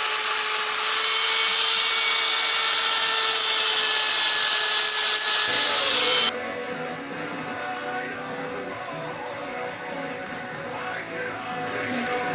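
A cordless drill runs steadily at high speed, drilling into a steel Stihl chainsaw bar, with a sustained whine and hiss. It cuts off suddenly about six seconds in, and background music plays for the rest.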